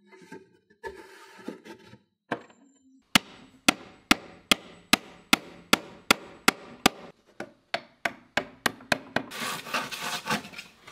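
A hammer taps thin wooden pegs into holes to pin plywood dividers into a wooden box. It gives a steady run of sharp wooden knocks, about two to three a second, that quicken after the seventh second. Just before the end, a frame saw starts rasping through a board.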